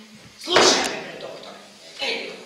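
Actors' voices, with one sudden loud sound about half a second in, fading after.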